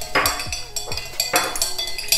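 A spoon stirring melted oil in a glass measuring jug, clinking against the glass about two to three times a second.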